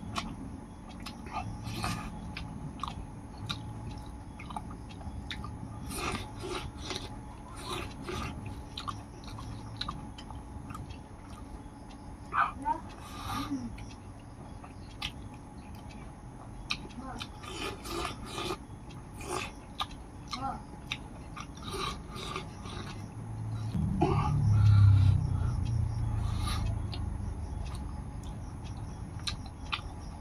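Close-up eating sounds: wet mouth clicks and smacks of chewing rice and buffalo skin, with fingers working rice in a metal bowl. A low rumble swells about three quarters of the way through and fades over a few seconds.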